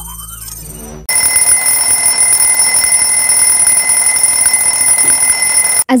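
A wake-up alarm ringing loud and steady for nearly five seconds, then cutting off suddenly. Before it starts, about a second of low droning with a rising sweep.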